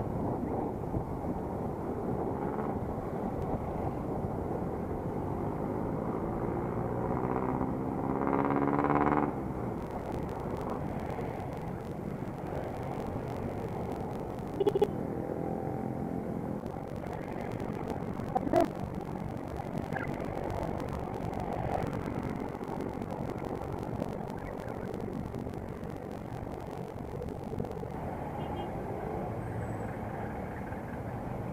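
Motorcycle engine and road noise picked up by a camera mounted on the bike while riding through city traffic. The engine rises in pitch for a couple of seconds about seven seconds in as the bike accelerates, rises again more faintly around fifteen seconds, and there are short knocks around fifteen and eighteen seconds.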